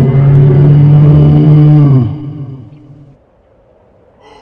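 A loud, low roar voiced for a yeti, one long steady note that breaks off about two seconds in and dies away within another second.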